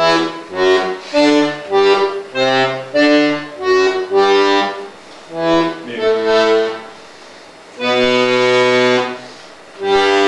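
Accordion playing a bass-clef accompaniment line: a steady run of short notes and chords, about two a second, then a longer held chord near the end.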